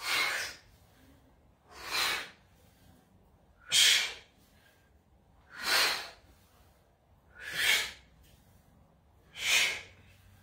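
A man's hard exhales through the mouth on each goblet squat, one rising out of each rep: six breaths about two seconds apart, with near quiet between.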